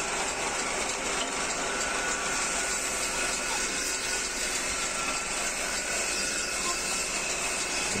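Belt-driven metal-spinning lathe running, with a hand-held spinning tool pressed against a stainless steel pan blank turning on the mandrel: a steady hissing whir with a couple of faint, even high tones.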